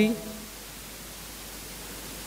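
A man's speaking voice trails off in the first moment, then a steady, even hiss of room tone and microphone noise with a faint low hum during a pause in the talk.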